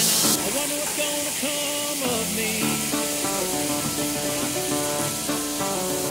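Pieces of beef loin sizzling in hot oil in a frying pan as they are seared for lomo saltado, mixed under background music of held notes. The sizzle is loudest for the first moment and then drops to a steady, lower hiss.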